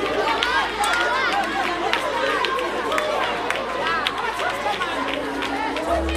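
A crowd of people talking and calling out over one another, many voices at once, with scattered short sharp knocks among them.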